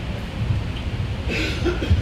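Low rumbling handling noise from a handheld microphone, with a brief rustle about a second and a half in and a thump near the end as the microphone is gripped.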